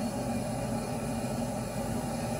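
Steady hiss and low hum of background room noise, with no distinct events.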